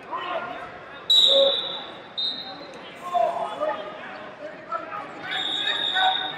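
Voices echoing in a large sports arena, with three steady, high-pitched referee whistle blasts. The first comes about a second in and is the loudest; the last starts near the end.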